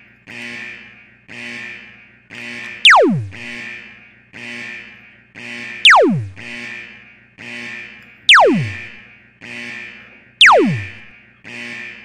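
Four video-game-style laser 'zap' sound effects, each sweeping down fast from a high whistle to a low tone, the loudest sounds here. They play over a looping electronic game-music track that pulses about once a second.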